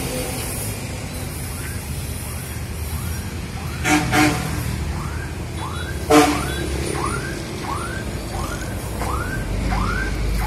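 Steady low rumble of road traffic, with two short honks about four and six seconds in and a faint high chirp repeating about twice a second.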